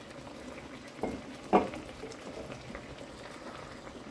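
Chicken thighs simmering in a pan of freshly added manzanilla wine, a steady low bubbling as the alcohol steams off. Two brief knocks sound about one and one and a half seconds in.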